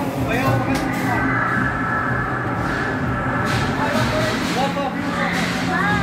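Indistinct voices over background music, with a steady low hum and a few short knocks.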